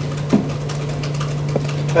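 A steady low hum of room tone, with a brief faint sound about a third of a second in and another near the end.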